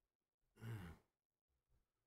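Near silence, broken about half a second in by one short, breathy sigh from a man.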